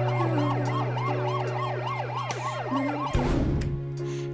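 An emergency-vehicle siren in a fast rising-and-falling yelp, about three cycles a second, over sustained background music; the siren cuts off about three seconds in.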